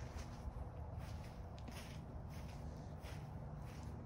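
Faint footsteps, irregular and about two a second, over a steady low rumble.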